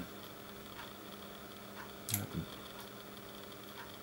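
Quiet room tone with a faint steady hum, a few light ticks, and about two seconds in a click followed by a brief low vocal sound.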